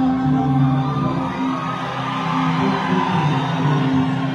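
Live concert music with sustained held notes, and an audience cheering and whooping over it, the crowd noise swelling in the middle.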